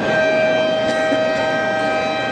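Basketball scoreboard horn sounding one long, steady electronic tone over the noise of the crowd in the gym.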